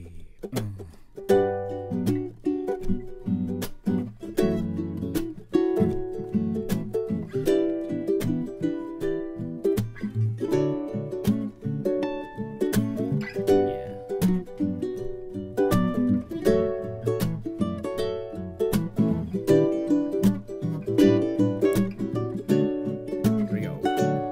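Two ukuleles playing an instrumental intro together, plucked chords and melody notes, starting about a second in.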